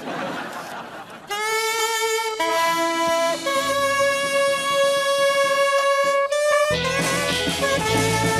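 A live band's horns play long held notes, changing pitch a few times, from about a second in. Near the end the full band with drums and bass comes in.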